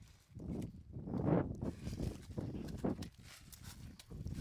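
Footsteps and scuffing on dry, cracked ground among lotus stalks, uneven and loudest a little over a second in.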